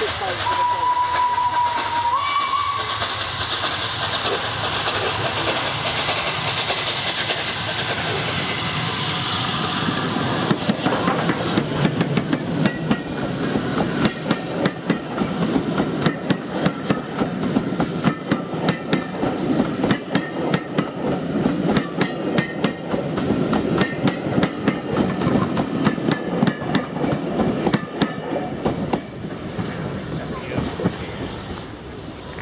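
Steam locomotive working hard as it approaches with a dense exhaust rush. From about ten seconds in it passes and the coaches' wheels run by, clicking sharply and unevenly over the rail joints.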